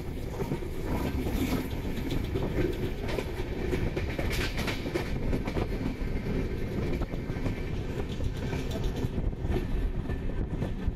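Express passenger train running at speed, heard from the coach: a steady rumble of wheels on the rails, with a few sharper clatters about four seconds in.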